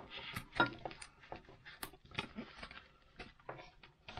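Scissors snipping and clicking as they cut packaging off a canvas knife sheath, with handling of the sheath in between: a string of small, irregular clicks.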